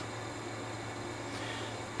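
Steady low mains hum with a faint even hiss beneath it, unchanging throughout.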